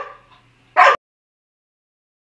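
A dog barking: one bark tailing off at the start and a second short, sharp bark just under a second in, after which the sound cuts off abruptly.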